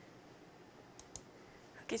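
Two quick computer mouse clicks about a second in, over quiet room tone.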